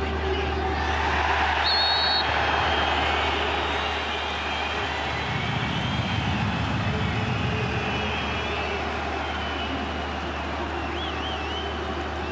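Stadium crowd noise with one short, shrill blast of the referee's whistle about two seconds in, stopping play for a foul. Thinner whistles from the crowd carry on over the crowd noise afterwards.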